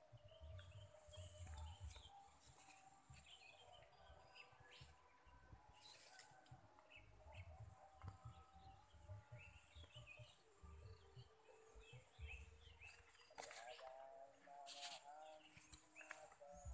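Near silence outdoors: faint, scattered short bird chirps in the distance over a low, uneven rumble on the microphone.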